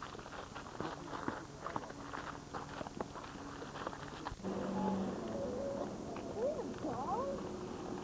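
Footsteps on a gritty dirt path, with clicks from handling the camcorder. About halfway through, the sound cuts abruptly to a steady low hum with faint voices rising and falling.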